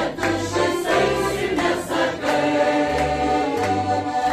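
Mixed choir of men and women singing a song with piano accordion accompaniment. The accordion's bass notes sound in a regular pattern under the voices.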